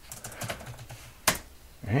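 Typing on a computer keyboard: a quick run of light key clicks, then one louder click about a second and a quarter in.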